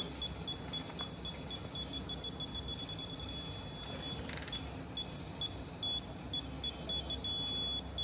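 Digital torque wrench beeping rapidly as the engine mount bolt is pulled up, with a brief rasp about halfway, then beeps at a slower pace and a short held tone near the end as the wrench reaches its set 55 ft-lb. The helicoil-repaired thread is taking full torque.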